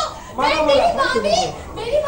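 A young woman's high-pitched voice pleading in Hindi, "please, let me go".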